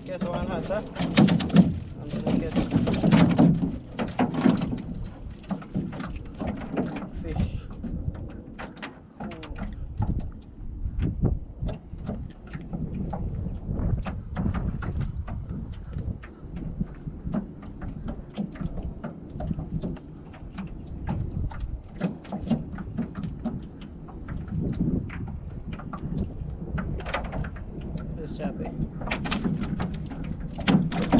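Cast net being worked by hand in a small boat: water dripping and splashing off the mesh, with many short knocks and clatters against the boat.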